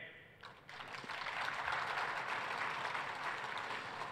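Audience applauding, starting about half a second in and holding steady.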